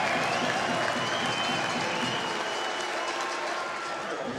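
Ice hockey arena crowd cheering and applauding a goal, easing off slightly toward the end.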